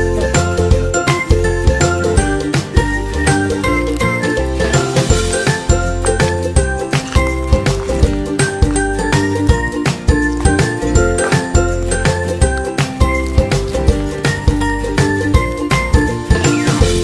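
Background music: an upbeat instrumental with bell-like chiming notes over a steady beat.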